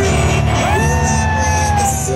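Live band music from the arena stage, with one long voice note held loud over it, sliding up about half a second in and then slowly down.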